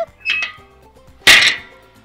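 The hinged steel cooking grate of a campfire fire ring is swung open. It scrapes briefly as it moves, then lands with a loud metallic clank a little past halfway through.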